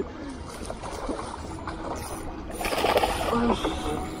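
Water splashing and swirling as a fish strikes at a floating lure at the surface, growing louder for about a second near three seconds in.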